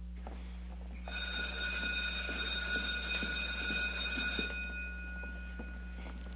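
Electric school bell sound effect ringing, one steady ring of about three and a half seconds starting about a second in, then cutting off and leaving a short fading tone.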